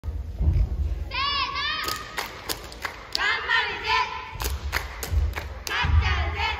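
High-pitched young voices shouting short cheers, each call rising and falling in pitch, in three bursts. Sharp claps and low thumps are scattered between them.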